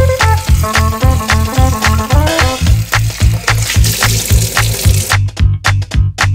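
Background music with a steady, driving beat. A hiss swells in the middle of the music and cuts off suddenly about five seconds in.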